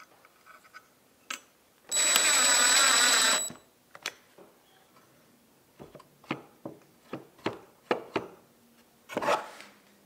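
A power drill runs for about a second and a half, then a run of light metallic clicks and taps from a hex key worked in the bolt of a steel bracket on a plywood part.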